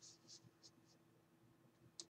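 Near silence: room tone with a faint steady hum and a few soft, short rustles in the first second.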